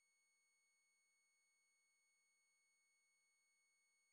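Near silence, with only a faint steady electronic whine of several high, unchanging tones.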